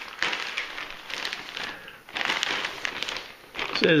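Plastic poly mailer envelope crinkling and rustling as it is handled, a run of quick crackles with a brief lull about two seconds in.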